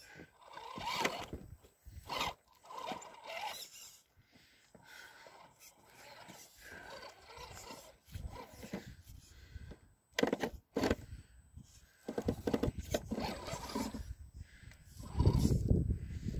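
Radio-controlled rock crawler's tires scraping and grinding over rock and loose gravel in irregular bursts as it climbs, with a low rumble building near the end.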